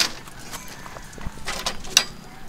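Footsteps of a person walking: a few scuffing steps, with a cluster of sharp clicks about a second and a half in and another at the end.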